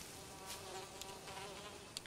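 Faint, steady buzzing of flies.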